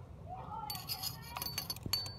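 Light metallic clicks and clinks, starting about two-thirds of a second in, as steel long-nose pliers are worked into the spark plug well of a Campro engine's cylinder head.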